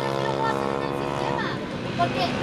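A racing motorcycle's engine running at steady revs as it passes, fading away near the end.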